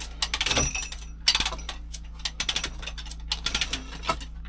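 Steel chain clinking and rattling in short bursts, about two a second, as the chain wrapped round a block of reinforced concrete is hauled on.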